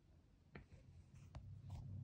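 Near silence, with a few faint ticks and a light rubbing of a finger tapping and swiping on a tablet's touchscreen.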